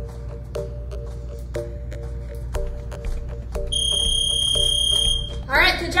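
Background music with a steady beat; about four seconds in, a digital gym interval timer sounds one long high-pitched beep lasting about a second and a half, marking the end of the work interval. A woman's voice starts just after the beep.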